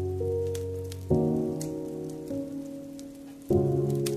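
Slow, soft piano chords: a new chord struck about a second in and another near the end, each left to ring and fade. Under them, the scattered pops and crackle of a wood fire.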